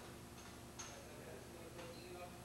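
A few faint, sharp clicks, about three, some with a brief high ring, over a low steady hum.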